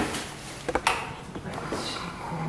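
Stainless steel electric kettle set down on its base with a knock, followed a little under a second later by two sharp clicks.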